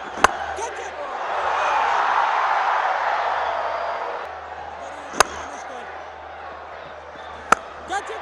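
Cricket bat striking the ball with a sharp crack just after the start, followed by a stadium crowd's roar that swells and slowly fades. Two more sharp cracks come later, the last shortly before the end as a batter pulls the next delivery.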